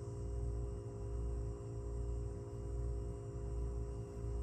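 Steady low electrical hum with a faint buzzing whine above it, unchanging throughout: room tone.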